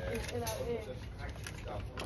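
Only speech: indistinct voices talking, over a steady low hum.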